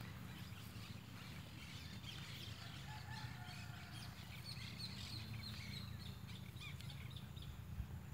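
Faint birds chirping and calling, many short high calls overlapping, busiest in the middle, over a low steady rumble.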